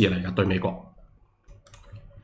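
A man's speech trails off, then a computer mouse clicks: one sharp click about a second and a half in, followed by a couple of fainter clicks near the end.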